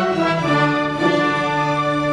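Symphony orchestra playing loud sustained chords with the brass prominent; the harmony steps down to a lower chord about half a second in.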